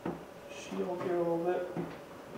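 A single hard knock at the start as a replacement side-view mirror is set against the truck's door, then a faint scrape of the part being positioned.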